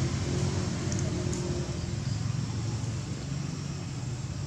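Steady low rumble under an even hiss of outdoor background noise, with a few faint ticks.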